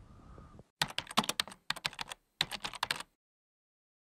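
Rapid, sharp clattering clicks in three quick bursts, loud, stopping abruptly.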